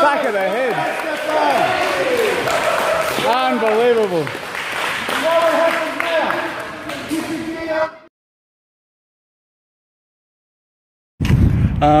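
A group of people shouting and cheering in a large gym hall, with hand clapping and sharp slaps among the voices. The sound cuts off abruptly about eight seconds in, and loud electronic music with a heavy beat starts near the end.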